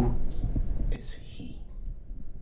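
A low steady drone with a short breathy, whisper-like sound about a second in, after which the drone drops away and it goes much quieter.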